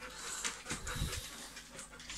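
A dog panting faintly.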